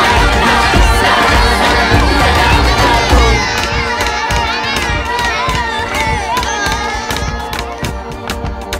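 A crowd of children shouting and cheering, over background music with a beat that is strongest in the first few seconds.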